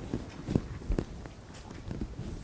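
A few soft, short clicks and light knocks, irregularly spaced, the sharpest about half a second and one second in.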